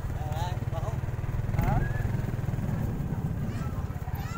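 Motorcycle engine running steadily under the rider, heard from the saddle, with a few brief snatches of people's voices passing by.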